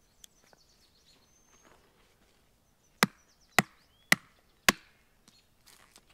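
Hatchet chopping resin-rich pine fatwood on a stump: four sharp strikes about half a second apart, starting about halfway through, after a few faint clicks of wood being handled.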